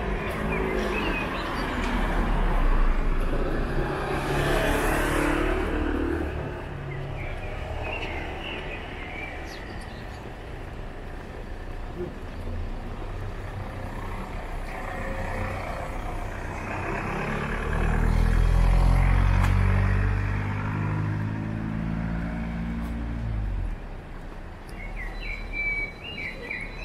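Road traffic on a street: cars passing, with two louder pass-bys, one a few seconds in and another with a low engine hum about eighteen seconds in.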